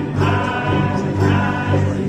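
A ukulele club strumming and singing a song together, many voices in unison over the ukuleles.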